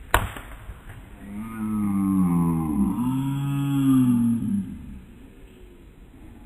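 A sharp thud of a body being tackled to the ground, then about a second later a long, drawn-out groan from a boy's voice, in two breaths sliding in pitch, lasting about three seconds.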